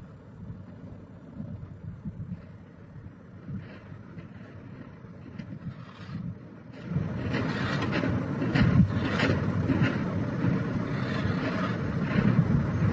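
Gusty wind noise on the microphone over a low outdoor rumble, growing much louder about seven seconds in.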